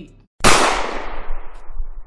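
An edited-in sound effect: a sudden loud burst of crackling noise comes in about half a second in, straight after a cut to dead silence. Its hiss fades over the next second and a half.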